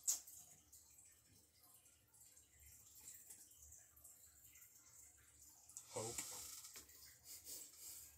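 Near silence: faint room tone with light handling and rustling noise, and one sharp click right at the start.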